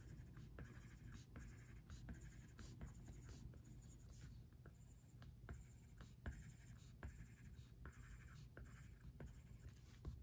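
Apple Pencil tip tapping on the iPad Pro's glass screen to place small dots. The taps are faint, irregularly spaced clicks, about two a second.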